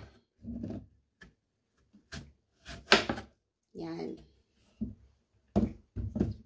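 Kitchen knife slicing through a peeled hairy gourd (fuzzy melon) into thick rounds, each cut ending in a knock of the blade on the cutting board. There are several separate cuts with short pauses between them, the loudest knock about three seconds in.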